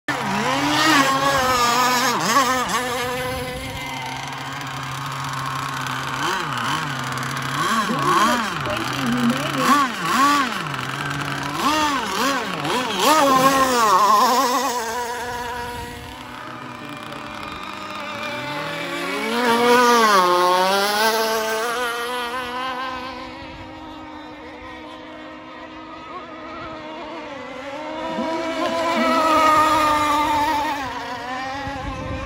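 Radio-controlled racing hydroplanes running flat out, their high-pitched motor whine sweeping up and down in pitch as the boats pass close and draw away. The nearest passes come several times, the loudest about 13 and 20 seconds in and again near the end.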